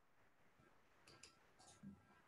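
Near silence with a few faint computer mouse clicks, about a second in and again near the end.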